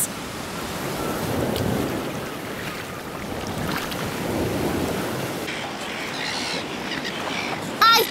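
Sea waves washing, surging and falling back in slow swells.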